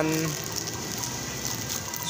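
Plastic packaging crinkling and rustling in the hands as a bagged ignition-switch key set is handled.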